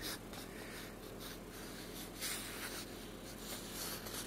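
Graphite pencil scratching faintly on paper in a few short sketching strokes, the clearest a little over two seconds in.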